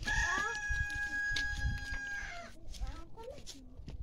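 A rooster crowing: one long held call, rising at the start and then holding steady for about two seconds before it breaks off.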